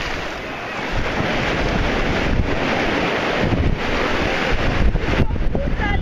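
Ocean surf washing up the beach, with wind buffeting the microphone.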